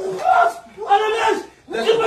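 Several men shouting and yelling together in loud bursts, with a short break near the end before the shouting picks up again.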